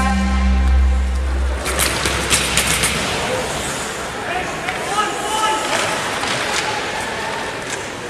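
An arena goal horn holding one low, steady note that cuts off about a second and a half in. It is followed by sharp clacks of sticks and puck on the ice and scattered voices in a half-empty rink.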